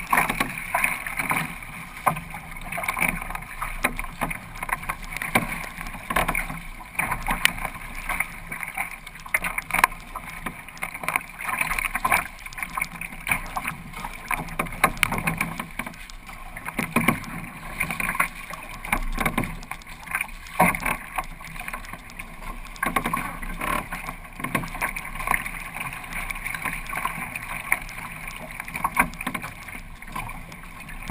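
Kayak being paddled through choppy water, heard from a camera on its bow deck: a steady wash of water against the hull broken by frequent, irregular splashes and slaps of spray.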